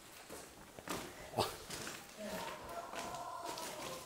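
Quiet room with a few soft footsteps on a tiled floor about a second in, and a faint voice in the background during the second half.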